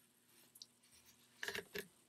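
Near-silent room tone, with a faint click about half a second in and a short cluster of faint clicks and rustles near the end.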